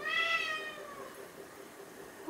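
A black domestic cat meowing once, a single call about a second long that drops in pitch as it ends.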